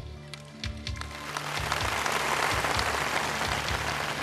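Audience applause swelling up about a second in and holding, over background music with a steady beat.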